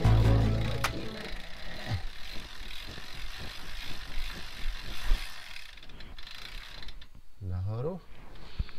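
Rear freehub of a Cannondale SuperSix Evo road bike clicking in a fast, even run of ticks as the crank is turned backwards by hand, the chain running through the Ultegra drivetrain. A short rising tone comes near the end.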